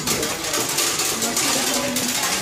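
Hand-cranked wooden corn sheller being turned, a fast steady rattling and clicking as a corn cob is fed through it.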